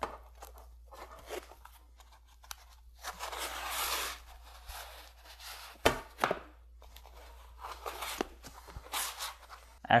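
Foam pipe insulation scraping and rustling against a copper pipe as the pipe is fed into its slit, with small clicks and knocks of the pipe on a wooden tabletop. The longest scrape comes about three seconds in, and a sharp knock about six seconds in.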